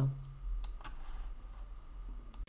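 A woman's voice trails off on its last word, followed by a few faint, scattered clicks over a low steady hum.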